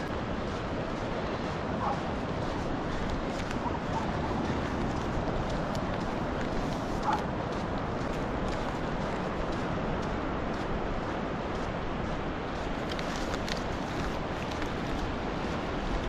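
Steady wash of surf breaking on a sandy beach, mixed with wind on the microphone.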